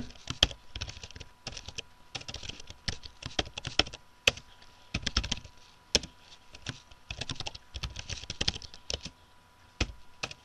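Typing on a computer keyboard: irregular runs of key clicks broken by short pauses, with a few louder single keystrokes among them.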